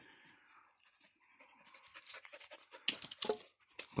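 Mostly quiet at first, then from about halfway a dog's faint panting and scattered crunching in dry leaf litter, with a few louder crackles near the end.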